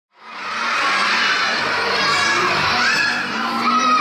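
A room full of children shouting and cheering together, a dense mass of young voices that fades in from silence at the start.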